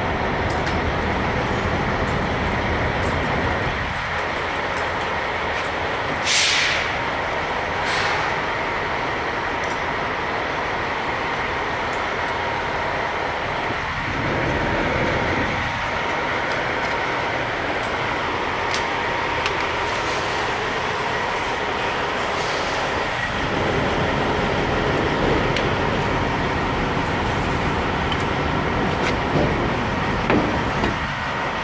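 Steady drone of idling semi-truck diesel engines with a faint steady whine. About six and eight seconds in come two short bursts of hissing air.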